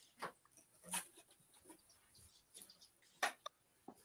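Faint, scattered knocks and clicks of someone rummaging for an item off-camera, with near silence between them.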